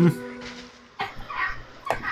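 A steady hummed 'hmm' held for under a second, then from about a second in, a woman laughing lightly in the background.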